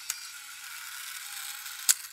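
A mechanical whirring sound effect with a steady hiss, a small click just after it begins and a sharp, louder click near the end.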